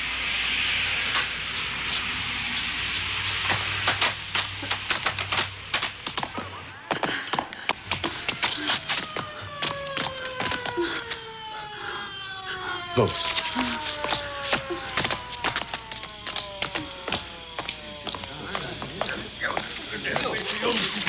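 Film soundtrack of eerie electronic music: from about eight seconds in, several tones glide downward together over a dense run of clicks and knocks.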